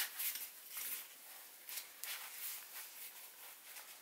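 Faint rustling and soft scrapes of a fabric bag strap being handled and threaded through its buckle.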